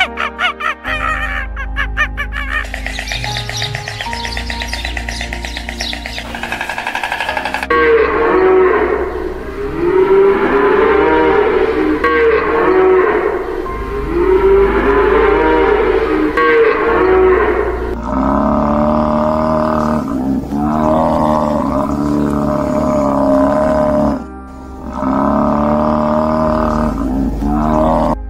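Cattle mooing over background music: long calls that rise and fall, repeating about every two seconds through the middle, then three longer calls near the end.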